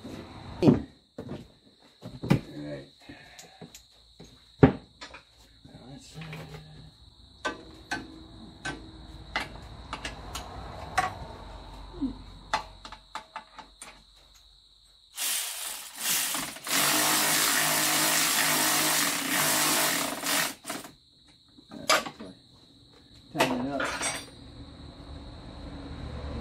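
Metal tools clinking and knocking as they are handled, then a cordless electric ratchet runs: a short burst about 15 seconds in, followed by a steady run of about four seconds that stops suddenly.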